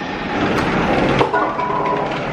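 Golf balls clattering through a mini golf course's ball-handling machine and spiral chute, with two sharp knocks about half a second and just over a second in.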